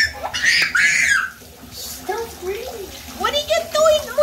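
Young girls' voices squealing and laughing in a bathtub, with bath water sloshing under them.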